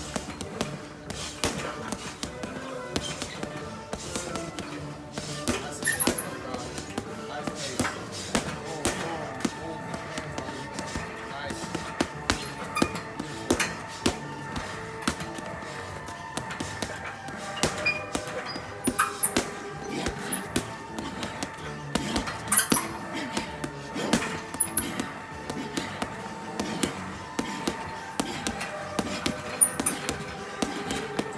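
Boxing gloves punching a long hanging heavy bag in quick, irregular combinations of thuds. Music plays underneath throughout.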